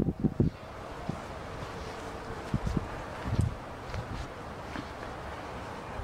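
A few soft knocks and low thumps, handling and movement noise, over a steady outdoor wind hiss on the microphone.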